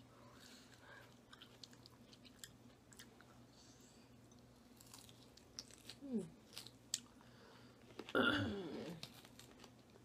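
Close-up chewing and crunching of Caesar salad, romaine lettuce and croutons, with scattered small crisp crunches throughout. A short murmur of voice comes about six seconds in and a louder one just after eight seconds.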